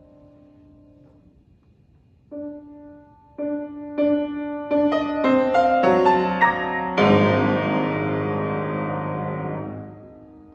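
Grand piano played solo: a held note fades out, then after a short pause single notes come in one by one, faster and climbing higher. About seven seconds in, a loud full chord is struck and held, then cut off just before the end.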